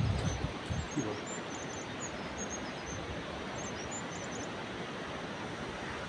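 Steady rushing of a river over a rocky bed, with short high bird chirps and quick trills over it.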